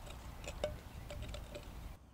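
Garden rake and hoe scraping through mulch and soil at the base of a tree, faint scratches with scattered light ticks as the tools meet debris and roots.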